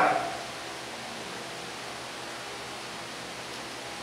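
Steady, even hiss of background noise with nothing else in it, after a man's voice trails off right at the start.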